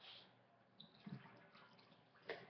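Near silence: faint room tone, with a brief faint sound about a second in.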